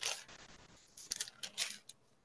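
Thin Bible pages being turned by hand, a faint crisp paper rustle in short bursts near the start and again from about a second in.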